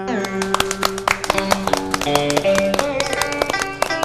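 Plucked-string accompaniment of a traditional Vietnamese vọng cổ ensemble playing a fast instrumental run of many quick notes between sung lines.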